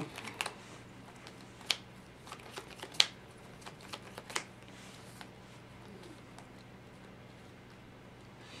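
Plastic-sleeved trading cards (Dragon Shield sleeves) being handled and sorted in the hand, with four sharp card snaps in the first half, then quieter handling.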